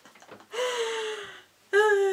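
A woman laughing in two long, high, breathy squeals, each falling in pitch. The second, starting about a second and a half in, is the louder.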